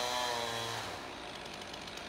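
Chainsaw running in a cut through a cedar trunk, its engine note sagging under load, then dropping away about a second in.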